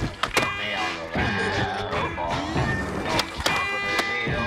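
A music soundtrack playing, with a few sharp knocks: two near the start and two about three seconds in.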